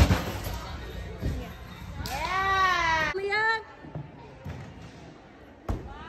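A thud at the very start, then a person's drawn-out high cheer about two seconds in, rising and falling in pitch, followed by a short second call.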